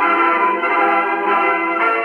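Dance-orchestra music from a 1932 Electrola 78 rpm shellac record played on a gramophone. It has the narrow, muffled sound of an old record, with sustained chords and bell-like tones changing every half second or so.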